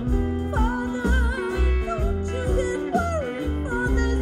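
Live band music: a singer holding long notes with a wide vibrato over electric guitar and a pulsing bass line.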